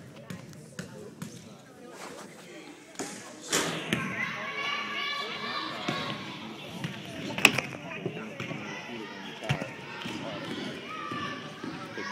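Basketballs bouncing on a hardwood gym floor, a string of sharp thumps during the opening seconds and one loud bang about seven seconds in, over voices chattering in the gym.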